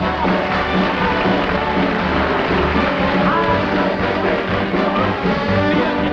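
Band accompaniment playing an instrumental passage of an upbeat swing-style popular song, with a steady bass beat under the melody.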